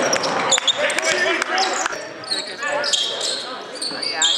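Gym sounds during a basketball game: a ball bouncing on the hardwood with sharp knocks, high sneaker squeaks, and voices echoing in the hall.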